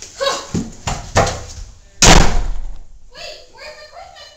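A few sharp knocks, then one loud bang about two seconds in, followed by a person's voice crying out without words.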